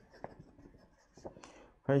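Faint rustling and small clicks of paper sheets being handled. A man starts speaking near the end.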